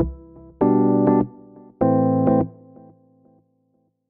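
Electric keyboard playing held chords: one rings out as it begins, then two more come about a second apart, each held about half a second before fading. A short silence follows near the end.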